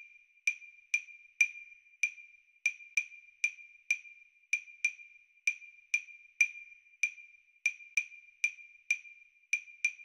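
A lone wood-block percussion pattern: short, sharp, high-pitched clicks, about two a second in an uneven, syncopated rhythm, with no other instruments under it.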